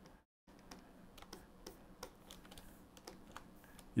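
Faint, irregular clicks of computer keyboard keys being pressed, with a brief moment of dead silence just after the start.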